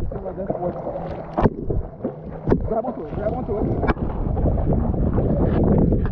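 Water splashing and sloshing around a swimmer in a life vest, with wind buffeting the microphone of a camera held at the water's surface, several sharp splashes and muffled voices.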